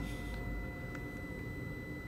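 Steady electrical whine of several fixed high tones over a low hum, with no other event standing out.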